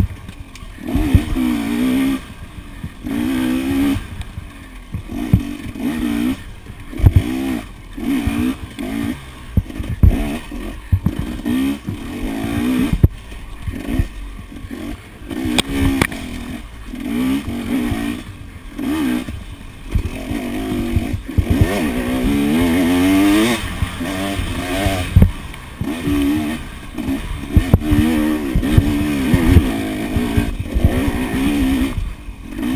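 Dirt bike engine revving in short bursts, rising and falling about once a second as the throttle is worked over rough trail. Sharp knocks and clatter from the bike and the handlebar-mounted camera jolting over the ground are mixed in.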